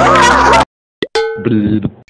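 A big splash into shallow pond water over music, both cutting off suddenly just over half a second in. About a second in comes a click, then a short pitched electronic logo sting.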